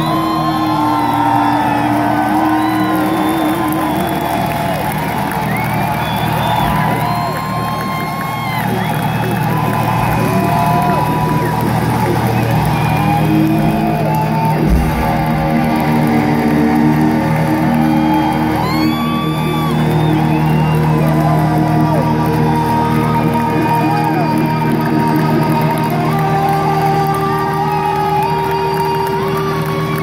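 Live rock band playing loudly: an electric lead guitar bends and slides its notes over steady bass and drums. Some crowd whoops can be heard.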